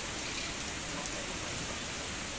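Steady hiss-like background noise of a market shop, with a sharp click at the very start and a fainter one about a second in.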